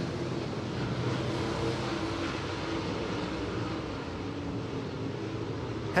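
A pack of dirt late model race cars running their V8 engines together around the track, heard as a steady, layered engine drone.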